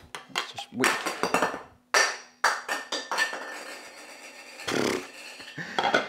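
A glass saucepan lid with a steel rim being lifted off a pan and set down on a kitchen worktop: a run of clinks and knocks, then a short ringing clatter.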